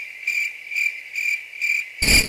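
Cricket chirping sound effect, a comic 'crickets' gag for an awkward silence: short, evenly spaced chirps, a little over two a second.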